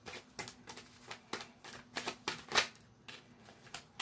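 Tarot deck being shuffled by hand: an irregular run of quick card riffles and snaps, the loudest about two and a half seconds in.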